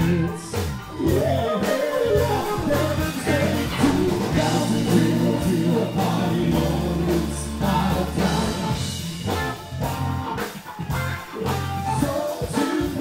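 A live band playing, with electric guitar, a steady bass line and drums under group singing.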